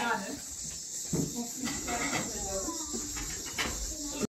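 Quiet, indistinct conversation among a group of people in a room, with no single clear voice, over a steady background hiss.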